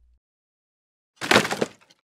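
A single brief, loud crash-like clatter about a second in, lasting roughly half a second, after a second of dead silence.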